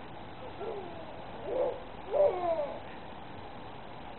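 Baby cooing and babbling: three short sliding vocal sounds, the last and loudest a little past the middle.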